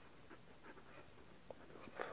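Faint scratching of a pen writing on paper, over quiet room tone.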